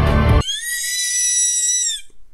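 TV-show music and dialogue cut off suddenly about half a second in, followed by a woman's high-pitched squeal of excitement, held steady for about a second and a half.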